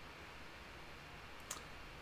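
Quiet room tone with a faint steady hiss and one short, sharp click about a second and a half in.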